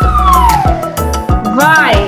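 Cartoon whistle sound effects over children's background music with a steady beat: a long falling whistle in the first half, then a quick rising-and-falling swoop near the end.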